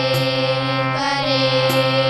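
Two children singing together to harmonium accompaniment, drawing out one long, slightly wavering note over the harmonium's sustained reedy chords and low drone.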